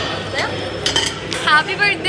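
Metal cutlery clinking against dishes, a few sharp clinks about a second in, over the murmur of a busy dining room.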